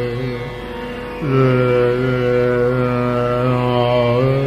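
Male Hindustani classical vocal in Raag Darbari Kanhra over a tanpura drone, sung in long held notes. About a second in, the voice slides up into a new note and holds it steadily, then shifts pitch near the end.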